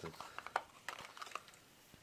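Light clicks and rattles of small Dremel accessories and their little plastic containers being handled and picked out of a plastic storage case, several short clicks in the first second and a half.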